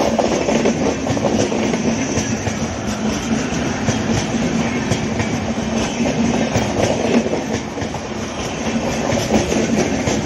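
LHB passenger coaches rolling past close by: a steady rumble of steel wheels on rail, with a run of repeated clicks as the bogies pass over the rail joints.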